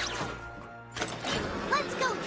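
Cartoon soundtrack: background music with a quick whoosh at the start as a character dashes off, then voices from about a second in.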